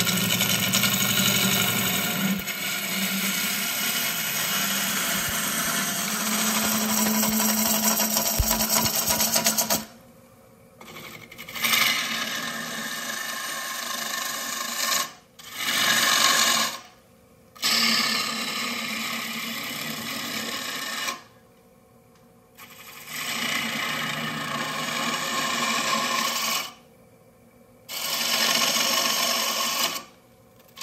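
Hand-held turning tool cutting the inside of a yew and mahogany bowl spinning on a wood lathe. The cut runs without a break for about the first ten seconds, then comes in stretches of a few seconds, stopping briefly about five times as the tool is lifted off the wood.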